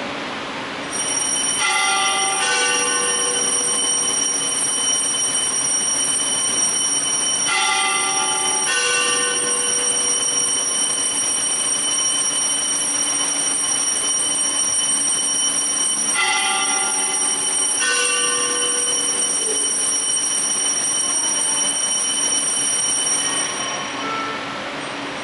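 Altar bells ringing for the elevation of the consecrated host: a continuous high ringing with three pairs of louder strokes spread through it, which stops just before the end.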